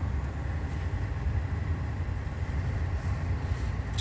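Tesla Model S Plaid's cabin heating running with its heat pump working: the blower pushes warm air through the vents with a steady low rumble and airy hiss.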